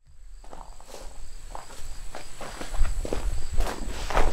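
Irregular soft scuffs and rustles of leather and thread being handled as a lock-stitch awl's needle is worked through the leather, with a low rumble building near the end.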